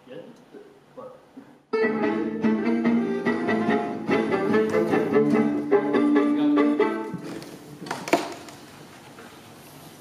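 Acoustic swing-manouche music on guitar and bowed violin cuts in abruptly about two seconds in, plays loudly for about five seconds, then fades down. A sharp knock comes near the end.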